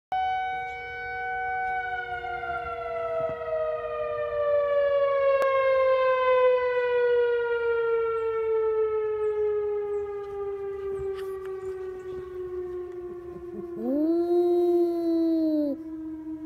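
Tornado warning siren sounding one long wail that slowly falls in pitch as it winds down. Near the end a Havanese dog howls once for about two seconds, its pitch rising and then falling, over the siren.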